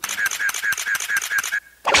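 A sound effect in a cheer-dance music mix: a rapid run of about eight short clicking beeps, about six a second. It stops, and after a brief gap the next track comes in with a loud hit near the end.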